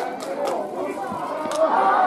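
Several voices calling out and chattering over one another on a football ground, with a few sharp clicks among them.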